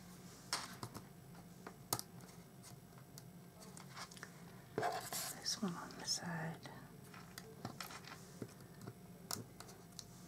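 Sparse, quiet handling noises from craft work: a few sharp clicks and light rustles. About five seconds in there is a short stretch of low murmured voice, too quiet for words.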